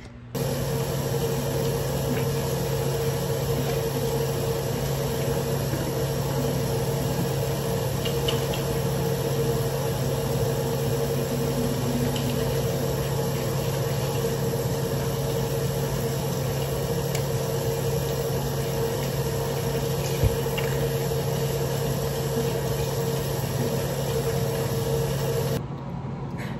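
Bathroom sink tap running steadily during hand-washing, with a steady low hum underneath. It starts and stops abruptly.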